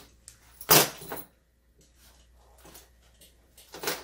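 Handling noise from a nylon fanny pack and its strap: a short, loud scrape about three-quarters of a second in and a smaller one just after, then faint rustling.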